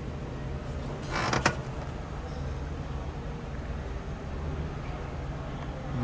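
Steady low background hum, with a brief creak ending in a sharp click about a second and a half in.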